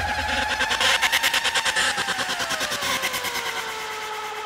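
Goa trance breakdown: the kick drum drops out and a rapidly pulsing synthesizer tone glides slowly downward in pitch over a hissing wash, gradually getting quieter.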